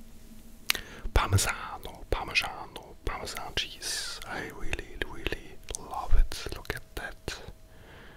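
Close-miked whispering, broken by short crisp clicks and handling noise as a small bowl of grated cheese is moved about, with two dull knocks, one about a second in and a louder one about six seconds in.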